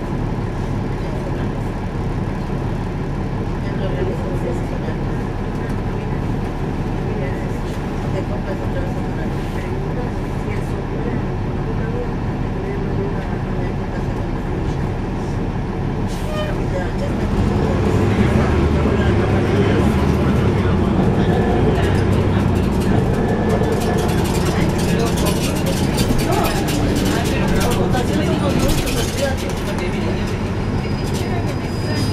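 Interior of a NABI 416.15 (40-SFW) transit bus heard from the rear seats: the diesel engine's steady running mixed with road noise. It grows louder and heavier about seventeen seconds in, with more clicks and rattles toward the end.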